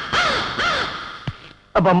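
A crow cawing: two arching caws in the first second, the same calls that run on from before. Near the end, a man's voice calls out in short repeated syllables.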